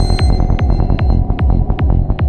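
Dark psytrance music: a fast pulsing bass line under a steady beat, with sharp hi-hat ticks about five a second.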